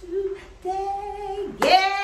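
A woman's voice singing two held, drawn-out notes, then a loud upward-sliding vocal exclamation near the end.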